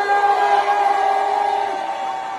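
A voice holding one long note through the microphone, steady in pitch, over the noise of a packed room.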